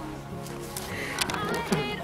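Background music with a few long held notes.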